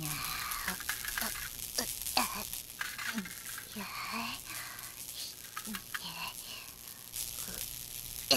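Cartoon welding sound effect: a steady crackling, sizzling hiss of sparks as a gadget is welded together, with short hums and grunts from the characters working.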